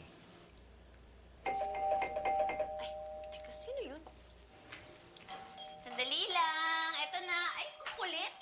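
Doorbell chime ringing about a second and a half in, its steady tones lingering for about two seconds before voices react.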